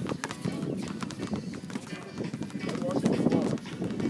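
A basketball being dribbled on a hard outdoor court: a run of repeated bounces.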